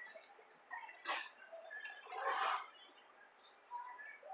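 A person drinking from a foam cup: two short sips, a sharp one about a second in and a longer one around two and a half seconds in, over faint room background.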